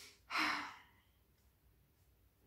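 A woman's sigh: a short breath in, then a louder breathy exhale lasting about half a second.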